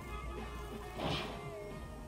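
A single short crash about a second in, a van striking a car, heard at a distance over music.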